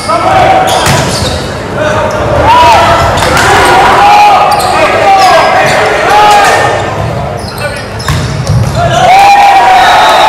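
Indoor volleyball rally in a gymnasium: sharp hits of the ball among short squeaks and shouted calls, with voices throughout, all echoing in the large hall.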